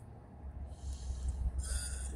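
A car passing on the road: a low rumble builds, with a hiss of tyre noise that grows strongest near the end.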